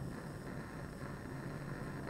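Bunsen burner's blue gas flame burning with a steady rushing noise, while a zinc sheet held in it burns with an orange flame.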